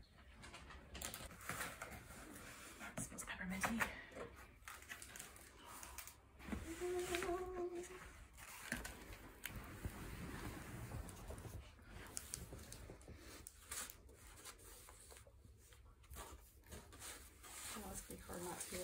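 Cardboard box being opened and unpacked: scattered rustling, scraping and crinkling of cardboard, tape and wrapping paper as the contents are handled. A short steady low tone sounds a little after six seconds in.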